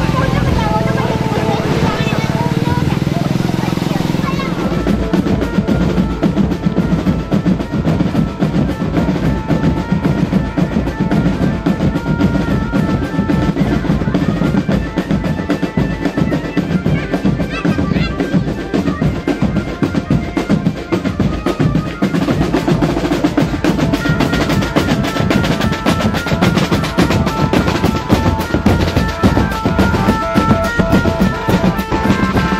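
Marching drum band playing: fast snare drum rolls and bass drum beats with a melody carried on top, the drumming setting in about four seconds in and running on steadily.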